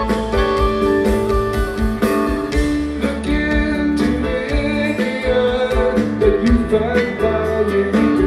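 Rock band playing live: electric guitars, electric bass and drum kit.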